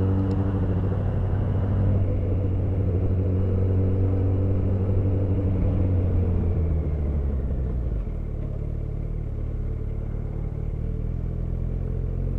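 Yamaha FZ1N motorcycle's inline-four engine running steadily under way. About eight seconds in, the sound changes abruptly to a lower, quieter steady engine hum.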